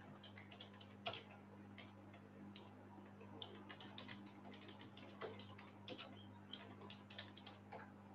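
Faint computer keyboard typing: irregular soft key clicks, with a louder click about a second in, over a steady low hum.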